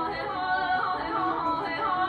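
A female vocalist sings Persian classical avaz in Abuata, a sustained line that winds up and down through quick ornamental turns.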